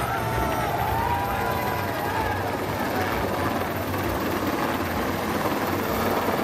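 Helicopter flying low overhead, its rotor and engine making a steady noise.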